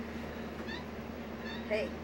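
Java macaque giving a short, high, rising squeak while grooming, over a steady low hum.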